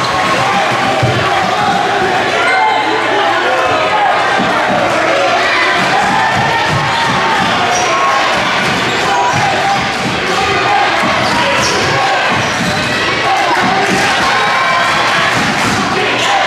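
A basketball being dribbled on a hardwood gym floor, a run of sharp bounces, over the steady noise of a crowd talking and calling out in the gym.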